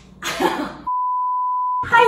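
A single steady high-pitched beep, a pure tone about a second long that starts and stops abruptly, like an edited-in censor bleep. It comes after a short, noisy, breathy sound.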